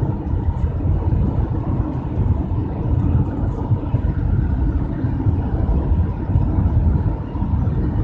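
Car driving at road speed, heard from inside the cabin: a steady low rumble of engine and road noise.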